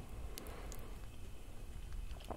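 Quiet low background rumble with two faint clicks in the first second.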